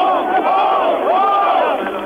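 A large crowd of many voices shouting and calling out together, loud and continuous.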